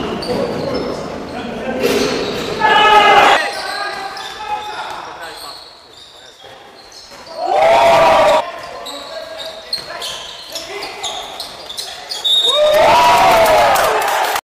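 Basketball game in an echoing sports hall: a ball bouncing on the wooden court with players moving around. Three times, about 3, 8 and 13 seconds in, there is a short, loud shout from a player.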